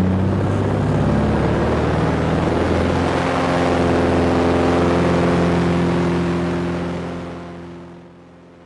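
Floatplane's piston engine and propeller running at power, heard from inside the cockpit, its pitch shifting slightly about three seconds in, then fading out over the last second or two.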